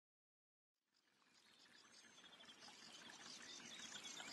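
Faint trickling water fading in from silence and growing steadily louder, with short high repeated notes running through it.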